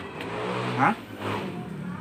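A motor vehicle's engine running steadily, with a brief rise in pitch just before a second in, like a short rev.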